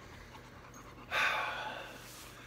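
A man's single long breathy exhale, a sigh, about a second in, fading out within a second.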